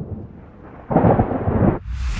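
Thunder sound effect: a crack, then a rolling rumble that swells about a second in. Near the end comes a quick whoosh as the picture sweeps to the next scene.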